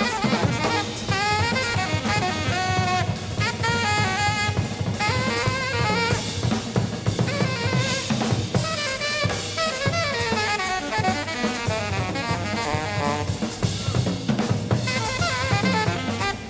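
Live jazz: an alto saxophone playing fast, winding runs over a busy drum kit, with snare, bass drum and cymbals.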